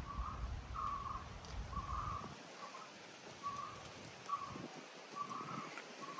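A bird calling over and over in short notes, about two a second, moderately faint.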